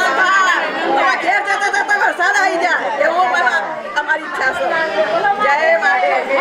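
Several women talking at once: overlapping chatter of voices, loud and continuous.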